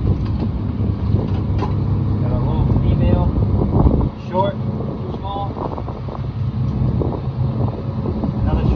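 Lobster boat's engine running steadily, a loud low rumble with wind on the microphone, dropping briefly about four seconds in.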